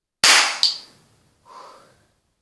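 Toy cap-gun revolver firing a cap: a loud, sharp bang about a quarter second in, a second crack less than half a second later, then a quick die-away.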